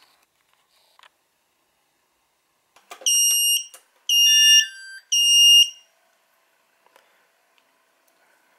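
Walkera Furious 215 racing quadcopter giving its power-up beeps as the battery is connected: three loud electronic tones of under a second each. The first and last are one steady high tone; the middle one steps down in pitch. A few small clicks come before them.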